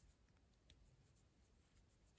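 Near silence: faint room tone with a single soft tick about two thirds of a second in, from a crochet hook and yarn being worked by hand.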